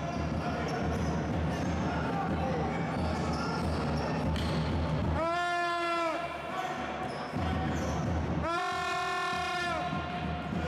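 Basketball game sounds on a gym court: sneakers squeaking on the hardwood-style floor in two long squeaks about five and eight and a half seconds in, over a steady hall rumble with a ball bouncing.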